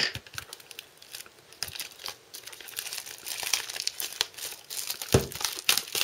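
Cellophane shrink-wrap crinkling and tearing as it is peeled off a plastic Blu-ray case, in many quick, irregular crackles, with a louder crackle about five seconds in.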